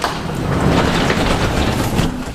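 Sectional garage door pulled down by hand on its rope, its rollers rumbling steadily along the metal tracks as it closes.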